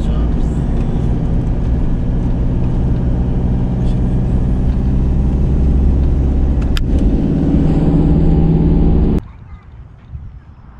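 Van engine and tyre noise heard from inside the cab while driving, a steady low drone with the engine note swelling a little near the end. It cuts off suddenly about nine seconds in, leaving only a quiet open-air hush.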